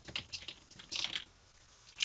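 Typing on a computer keyboard: a quick run of keystrokes in the first half second, then one more short burst about a second in.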